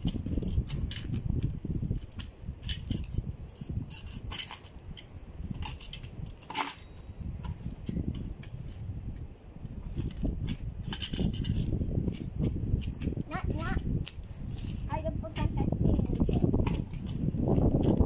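Wind buffeting the microphone in uneven gusts, with scattered light clicks and knocks.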